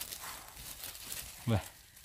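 Dry fallen beech leaves rustling and crackling faintly as a hand brushes them aside from around a porcino mushroom, with a brief spoken word near the end.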